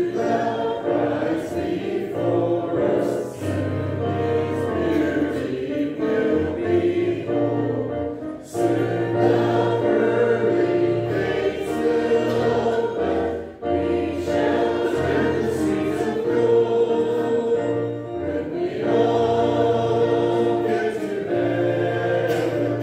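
A choir singing a hymn with instrumental accompaniment and held bass notes, in phrases broken by short pauses about every five seconds.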